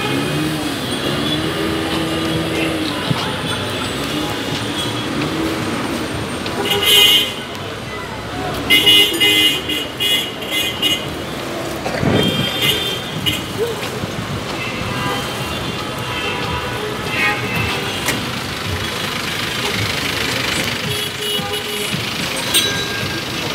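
Busy street traffic of microbuses and cars running, with short horn toots about a third of the way in and again around the middle, over a steady hubbub of voices.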